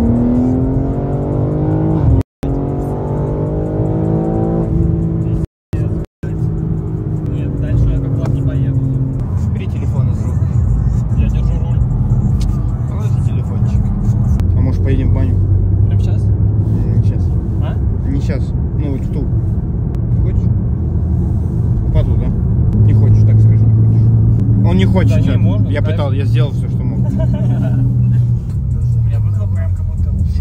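Car engine heard from inside the cabin, accelerating with its pitch rising in several pulls over the first nine seconds, then settling into a steady low drone while cruising.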